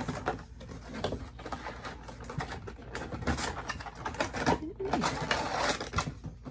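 Cardboard collectible box being handled and its packaging shifted: a string of irregular clicks, taps and rustles.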